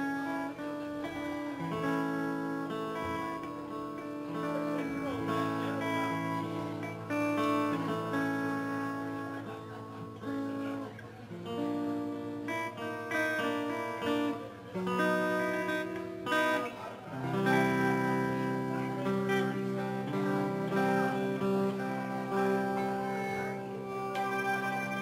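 Live band playing amplified music, guitar to the fore, with held chords that change every second or two.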